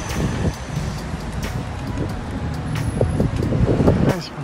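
City street traffic, with a van driving past close by. The rumble is steady and grows heavier near the end.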